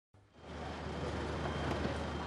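Faint, steady low hum of an idling vehicle engine with general background noise, fading in about half a second in.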